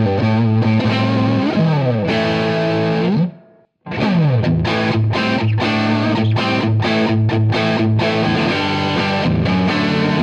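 Distorted electric guitar played through an amp: a lead phrase with string bends on a Les Paul-style guitar, a short silent break a little over a third of the way in, then quicker picked notes on a second Les Paul-style guitar using a Lace Alumitone pickup in the neck position.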